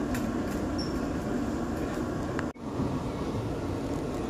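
Steady low rumble of a Viking Line cruise ferry under way, heard on board. It cuts out for an instant about halfway through, then carries on unchanged.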